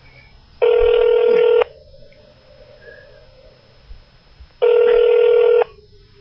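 Telephone ringback tone heard down the phone line: two rings about a second long each, about four seconds apart, while a transferred call rings through to a store department before it is answered.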